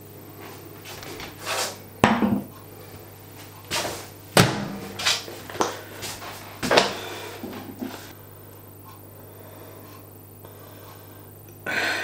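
A few sharp knocks and thuds as a hot glass pudding bowl is set down on a metal trivet and handled with oven gloves, over a low steady hum. From about eight seconds in only the hum remains.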